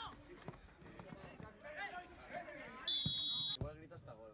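A referee's whistle gives one short, steady, shrill blast about three seconds in, the loudest sound here, which cuts off abruptly. Before it, players' voices call across the pitch over the dull thuds of a football being kicked.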